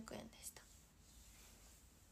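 Near silence: room tone, with the soft tail of a spoken word at the start.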